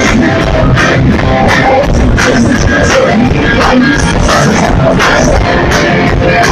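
Punk rock band playing loud live, with electric guitar and a steady beat of drum and cymbal hits a few times a second.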